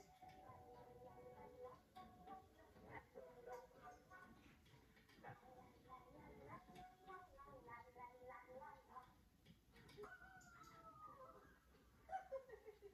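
Faint television audio picked up from the room: music with voices or singing.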